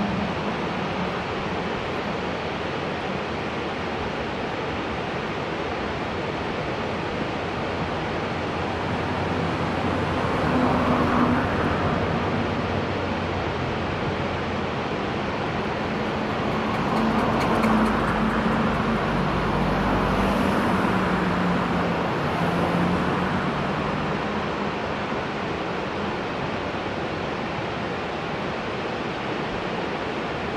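Steady road-traffic noise, swelling as vehicles pass about ten seconds in and again a few seconds later, each pass carrying a low engine hum.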